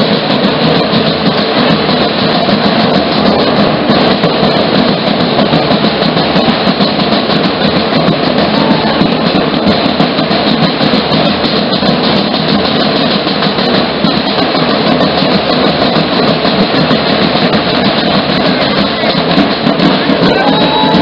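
Danza Apache drumming: a group of drums beaten together in a dense, unbroken rhythm that keeps up steadily without a pause.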